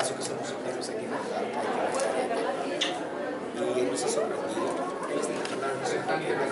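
Indistinct chatter of several people talking at once, a steady babble of overlapping voices.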